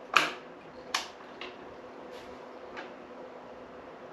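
Garrard RC121/4D record changer starting its automatic change cycle: a sharp click just after the start, then a few lighter mechanical clicks and ticks from the changer mechanism over a faint steady hum.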